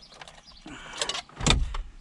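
Hands rummaging in a Jeep Wrangler's plastic glovebox, with light rustling and small clicks. About one and a half seconds in comes a single solid thud as the glovebox lid is shut.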